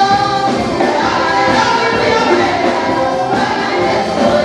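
Live gospel praise music: a woman's lead vocal with backing singers, sung over a drum kit and keyboard, loud and steady.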